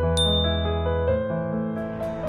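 A single bright notification ding, the chime of an on-screen subscribe-button and bell animation, sounding about a fifth of a second in and ringing on as it fades. It plays over soft piano background music.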